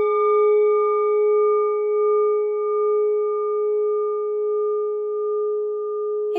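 A single sustained bell-like tone, struck once just before and ringing on steadily: one low note with a few higher overtones and a slight wavering. The highest overtones fade over a few seconds while the main note holds.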